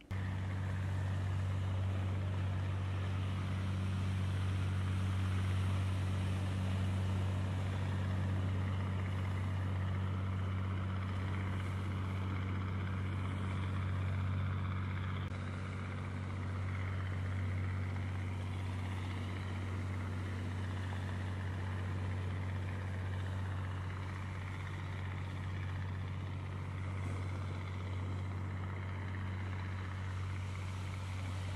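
A fishing boat's inboard engine droning steadily as it motors past, over the wash of waves on a rocky shore. The drone eases slightly about halfway through.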